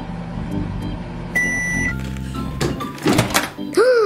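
Cheerful background music with a single microwave-style beep, one steady high tone lasting about half a second, about a second and a half in, followed by a short noisy swish. A voice starts briefly at the very end.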